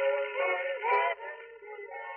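Boys' gospel quartet singing in harmony, with the thin, narrow sound of an old radio broadcast recording. A held phrase ends about a second in and quieter singing follows.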